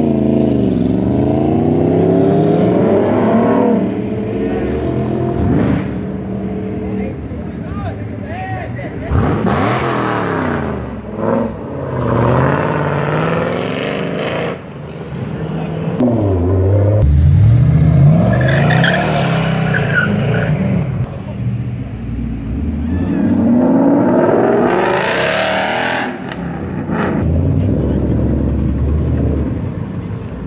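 A sport bike's engine revving up and down in quick blips as it rides off, followed by several cars accelerating away one after another. Each engine's pitch rises and falls, with a deeper, louder engine pass about halfway through.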